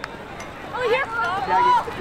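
Several high-pitched voices shouting and calling out at once across an outdoor lacrosse game. The voices start up a little way in and are loudest near the end.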